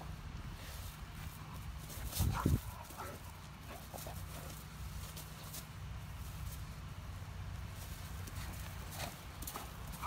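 Great Dane puppy playing with a newspaper on a lawn: paper rustling and crinkling, and paw footfalls as she bounds with it. There is a short vocal sound about two seconds in, over a steady low rumble.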